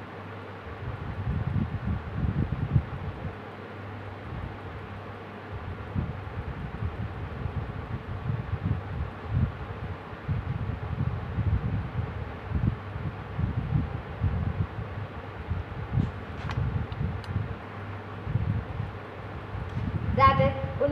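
Uneven low rumble of moving air buffeting the microphone, over a faint steady hum, with a couple of faint clicks about three-quarters of the way through.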